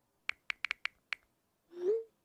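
Smartphone keyboard clicks as a text message is typed: six quick, sharp taps in the first second or so. A brief rising tone follows near the end.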